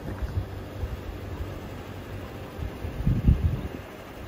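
Wind buffeting the microphone in an uneven low rumble, with a stronger gust about three seconds in.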